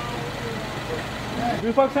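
Outdoor street noise with a low, steady hum like distant traffic, then a woman starts speaking into a walkie-talkie near the end.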